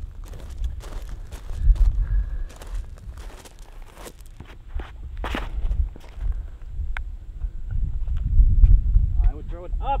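Footsteps and scuffs on grass as a disc golfer runs up and throws, with scattered sharp clicks and a steady low wind rumble on the microphone.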